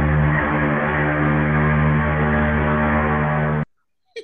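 Ship's horn sound effect sounding one long, loud, steady blast that cuts off abruptly near the end, heard over a video call with its highest tones cut off.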